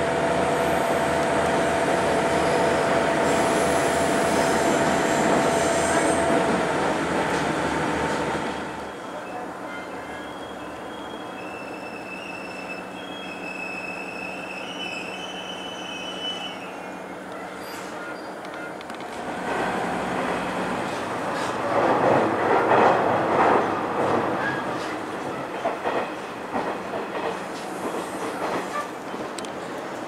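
Koumi Line diesel railcar heard from inside, its wheels running on the rails with a steady squeal of several held tones for the first seven seconds or so. About eight seconds in the sound drops to a quieter hum as the train stands at a station. It grows louder again from about twenty seconds in as the train gets under way.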